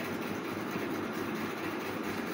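Steady, even background rushing noise with no distinct events.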